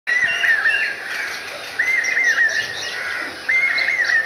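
A songbird singing three short whistled phrases, each about a second long, over a steady background hiss.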